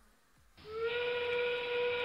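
The field's end-game warning played over the arena sound system: a steam-train whistle sound effect, one steady held note that starts suddenly about half a second in.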